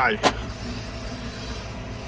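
Tractor engine and drivetrain running steadily under load, heard from inside the cab as a low drone, while pulling a power harrow and seed drill. A single sharp click comes about a quarter second in.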